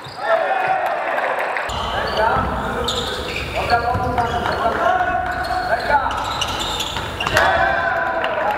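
Basketball game in a sports hall: a ball bouncing on the court, with players' voices echoing around the hall.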